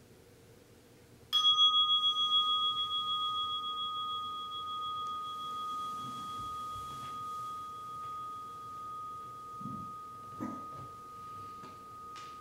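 A meditation bell struck once about a second in, ringing on with a wavering, slowly fading tone that marks the end of the sitting. Soft rustling and a couple of light knocks come near the end.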